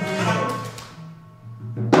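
Live ensemble music: a low held tone under two drum strikes, one at the start that rings away and a louder one near the end.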